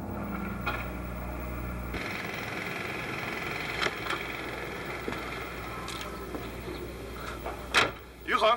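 A car's engine running as the car pulls up and idles, with a few light clicks, then a sharp click near the end as the car door is opened.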